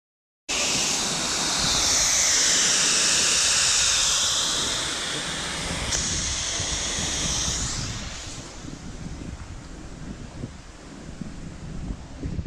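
Fire hose nozzle shooting a jet of water, a loud steady hissing rush mixed with wind on the microphone, starting suddenly. The rush fades about eight seconds in, leaving wind noise and a low rumble.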